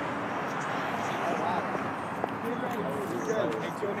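Indistinct voices of several people talking over a steady outdoor street background, with a single sharp click about two seconds in.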